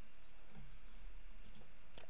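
Steady low background hiss and hum, with a few faint short clicks near the end.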